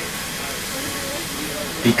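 Steady hissing noise inside a canal tour boat's cabin while it cruises, with faint low voices in the background.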